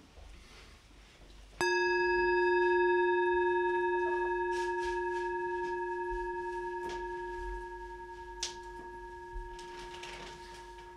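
A Tibetan singing bowl struck once, ringing on with several overtones and fading slowly. It marks the start of a short meditation.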